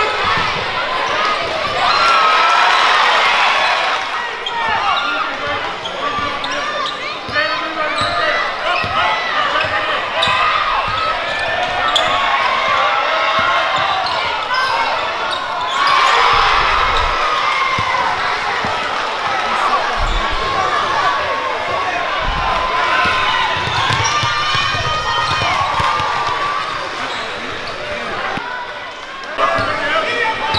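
Basketball dribbled on a hardwood gym floor amid crowd voices and shouting, with a sudden louder burst of crowd cheering about sixteen seconds in.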